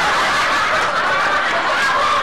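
Several people laughing together, overlapping laughs and chatter filling the room in a steady mix.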